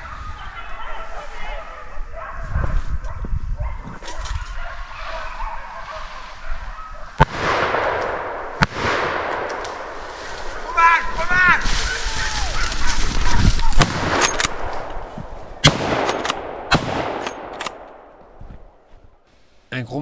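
Hunting dogs baying on the trail of a wild boar, with a loud rushing noise from about seven to fourteen seconds, two sharp cracks near its start and a quick run of clicks about sixteen seconds in.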